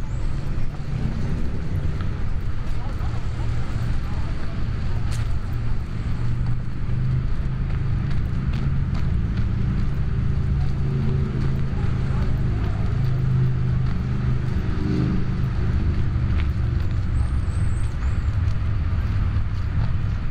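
Outdoor city ambience: a steady low rumble of distant road traffic, with faint voices now and then.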